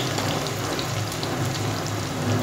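Chopped onion and green chilli frying in hot oil in an aluminium pressure cooker: a steady sizzle full of small crackles, as they cook toward browning. A sharp tick sounds at the very start.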